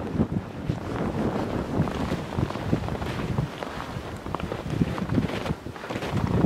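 Gusty storm wind blowing snow and buffeting the microphone, a low, uneven rushing noise that swells and drops with each gust.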